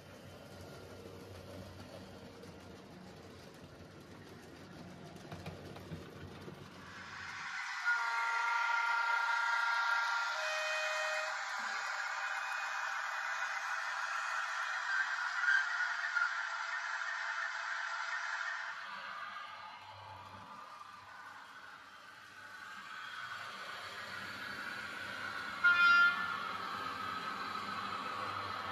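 Model railway train sounds: a faint low rumble at first, then from about eight seconds a louder, thin-sounding train noise with a horn sounding several times, fading out around nineteen seconds. A single short horn toot comes near the end.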